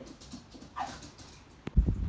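A dog gives one short, faint yip that falls in pitch about a second in. Near the end there is a click and low thumps of the camera being handled.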